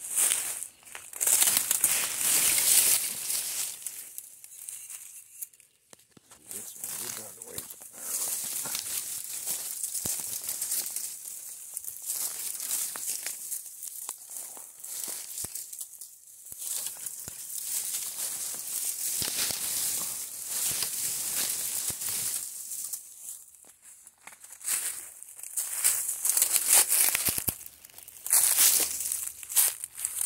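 Footsteps crunching through dry leaf litter and sticks on a forest floor, with brush rustling, in irregular crackling bursts that are loudest near the start and near the end.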